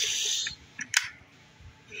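Handling noise from a hand moving at the camera: a brief rustle, then a single sharp click about a second in.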